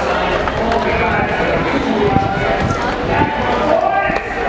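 Many voices overlapping at once, crowd chatter with no single clear speaker, loud and steady.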